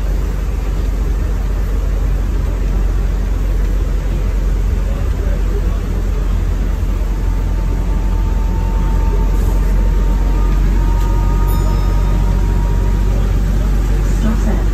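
Inside a Volvo B12BLE low-entry bus under way: the steady low drone of its rear-mounted 12-litre six-cylinder diesel and road noise, heard from the rear seats. It grows a little louder about halfway through, when a faint high whine joins it for several seconds.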